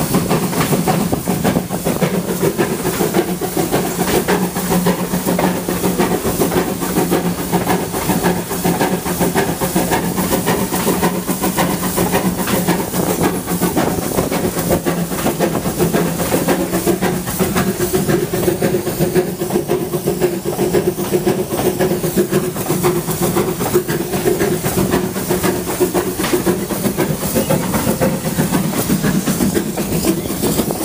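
A passenger coach on a steam-hauled train rolling along the track, heard from inside the car: a loud, steady running noise of wheels and car. A low steady hum runs under it and shifts a little higher about halfway through.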